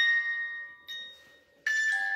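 Background music of bell-like mallet-percussion notes ringing and fading. One is struck at the start, a softer one about a second in, and a louder one near the end after a brief moment of silence.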